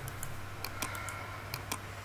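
About half a dozen short clicks of a computer mouse button, some in close pairs, over a steady low hum.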